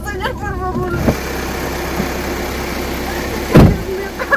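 Steady rushing noise with one heavy thump near the end: a van's door slammed shut as a passenger climbs out.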